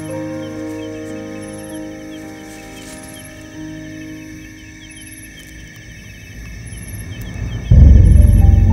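Background music of long held chords that slowly fade, then swell into a loud, low-pitched entry near the end.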